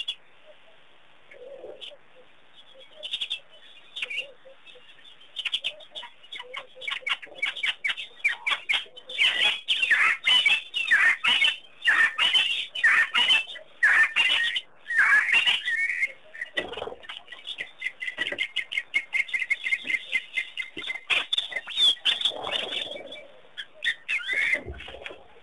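Birds calling at a waterhole: a few scattered chirps at first, then from about six seconds in a dense chorus of rapid chirps and falling calls, thinning toward the end.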